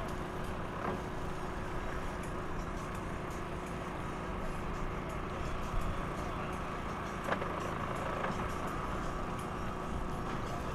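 Twin Mercury 250 EFI V6 two-stroke outboards idling steadily while the boat creeps in at slow speed. Two short knocks come about a second in and again near seven seconds.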